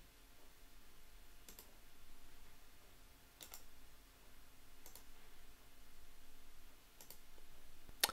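Four faint computer mouse clicks, spaced about one and a half to two seconds apart, over quiet room tone.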